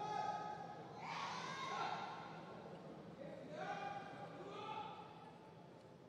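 Several long, held, high-pitched shouts from people in the competition hall, about four calls over the room's low hum, fading near the end.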